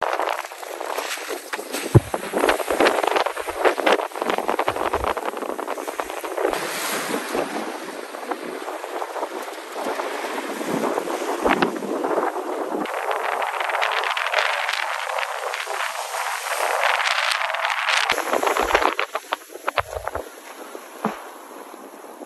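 Strong wind gusting across the phone's microphone, with low rumbles of buffeting, over the wash of small waves on the beach. The wind eases noticeably near the end.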